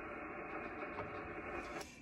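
Faint, steady receiver hiss from a Yaesu FT-991 ham radio's speaker, with the band noise cut off sharply at the top by the narrow voice filter. The hiss stops suddenly near the end as the microphone is keyed to transmit.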